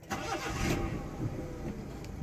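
Honda City's 1.3-litre engine being started: the starter cranks briefly, the engine catches within about a second and settles into idle.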